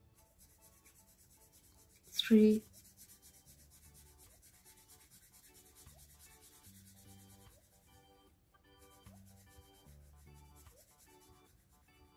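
Felt-tip marker scratching back and forth on paper in quick strokes as a number is coloured in, faint under soft background music. A short spoken word cuts in about two seconds in.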